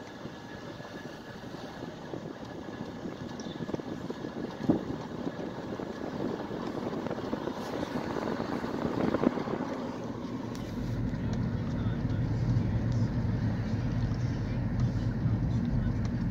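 Car driving slowly along a road, with tyre and engine noise heard from inside the cabin. About ten seconds in, a steadier low engine hum comes in and grows louder.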